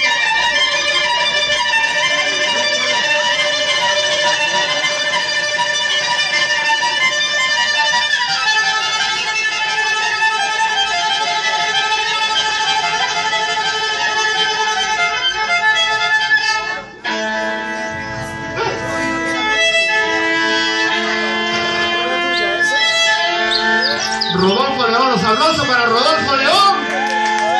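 Live ensemble music with a violin prominent in the melody. About 17 seconds in the music breaks off abruptly, and a new section starts with long held notes. Sliding notes come near the end.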